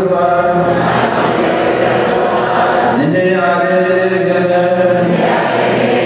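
A man's voice chanting a Syriac Orthodox liturgical prayer into a microphone, holding long notes, with a new phrase beginning about halfway through.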